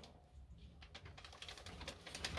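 A young pet rat making faint, quick clicking sounds that grow busier toward the end, as it climbs over a plastic igloo and nibbles soft food from a hand.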